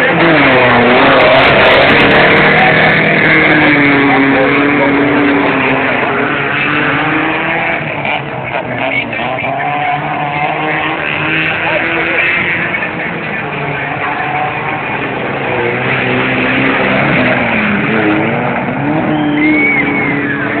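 Suzuki Samurai 4x4 engine revving, its pitch rising and falling repeatedly as it works through deep mud, loudest in the first few seconds.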